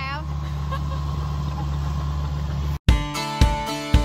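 An engine idling steadily, a low even hum. It cuts off abruptly a little under three seconds in, and plucked-string intro music starts, with a sharp note about twice a second, louder than the engine.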